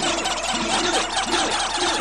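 Electronic film-score music made on a Fairlight CMI: a dense, chattering mass of short, overlapping tones that each glide downward in pitch, with no beat.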